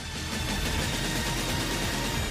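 TV transition sound effect: a steady rushing whoosh with music underneath, lasting about two seconds.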